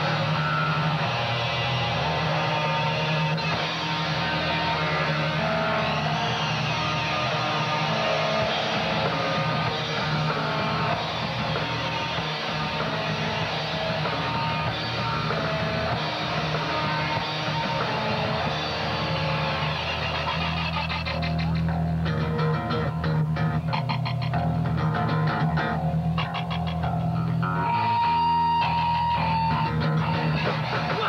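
Punk band playing live on electric guitars, bass and drums, loud and steady. In the last third the playing turns choppy and stop-start, and a single high note is held near the end.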